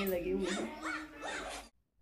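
Indistinct voices talking in a room, which cut off suddenly near the end.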